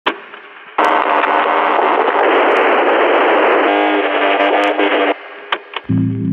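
Lo-fi, radio-like static: a click, then about four seconds of loud, thin-sounding noise in which a pitched hum emerges near the end. It cuts off abruptly and is followed by a couple of small clicks.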